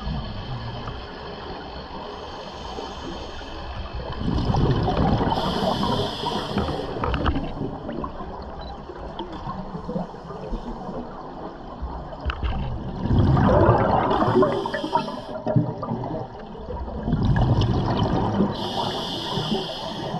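A scuba diver's regulator breathing underwater. Three times, exhaled bubbles burst out with a rumbling gurgle, each joined by the hiss of the demand valve.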